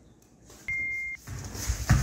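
A single steady electronic beep lasting about half a second, starting and stopping abruptly, followed by a run of low, uneven thuds.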